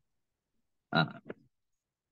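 A single short spoken syllable from a person's voice about a second in; the rest is silence.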